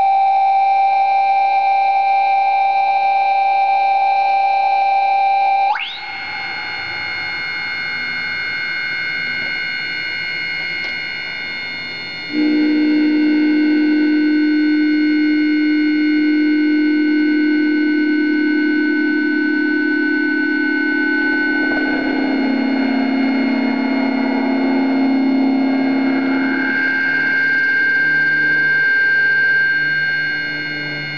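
Electronic drone from a self-fed mixer and ring-modulator feedback loop with a ring-mod guitar: loud, steady held tones with many overtones. The tones switch suddenly about six seconds in, a low tone enters about twelve seconds in and steps lower near twenty-two seconds, and a higher tone shifts near the end.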